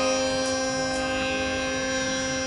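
A woman singing a classical Indian vocal line and holding one long, steady note, with a steady drone beneath it.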